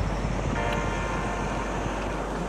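Steady outdoor noise: wind rumbling on the microphone over an even rushing hiss. A faint steady tone comes in about half a second in and fades after about a second.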